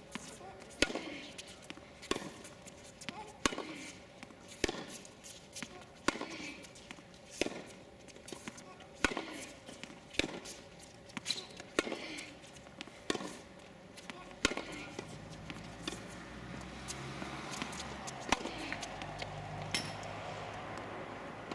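Tennis rally on a hard court: racket strikes on the ball, one sharp hit about every 1.3 seconds as the shots go back and forth, stopping about three-quarters of the way through. A low steady hum comes in near the end.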